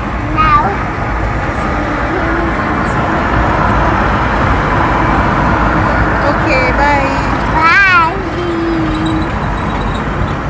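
Steady road noise inside a car cabin while driving, with a young child's high, sliding voice cutting through a little after the start and again from about six to eight seconds in, loudest near eight seconds.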